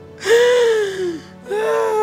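A woman laughing into a handheld microphone: two long, breathy laughs, each starting high and falling in pitch, the second beginning about a second and a half in.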